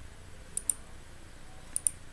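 Computer mouse button clicked twice, about a second apart. Each click is a quick pair of ticks: the button pressed, then released.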